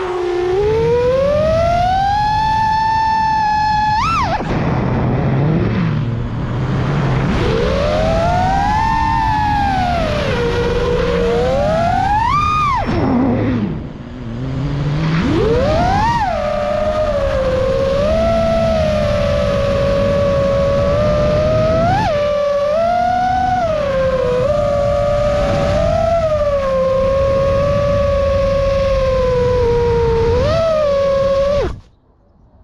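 Brushless motors of a five-inch FPV quadcopter (Xing E Pro 2207 2750KV with 4934 S-Bang props) whining as they are throttled. The pitch swings up and down, drops sharply with a short quieter moment about 14 s in, then holds steadier with quick blips through the second half. Heard from the onboard camera, with rushing air underneath.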